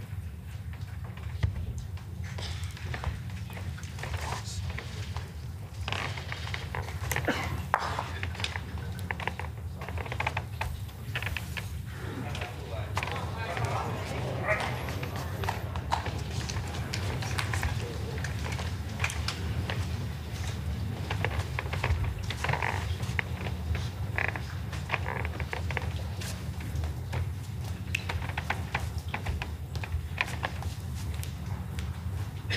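Indoor arena ambience: a steady low hum, with a soft murmur of spectators and scattered small clicks and knocks.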